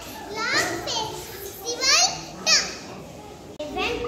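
A young boy speaking in short phrases in a high child's voice, with a brief pause about three seconds in.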